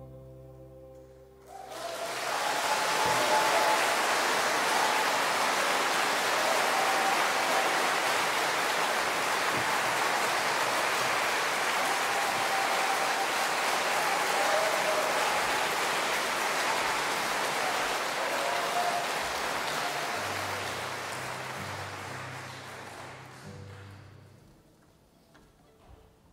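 A held note of string music ends about a second and a half in, and audience applause rises quickly, holds steady, then fades out near the end. Faint low tones sound beneath the fading applause in the last few seconds.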